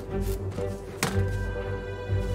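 Slow ambient fantasy music of held notes, with a single sharp knock about a second in from the shop ambience mixed beneath it.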